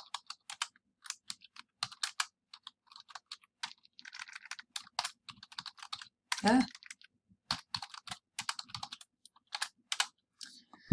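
Typing on a computer keyboard: a steady run of key clicks at an uneven pace as a search query is entered.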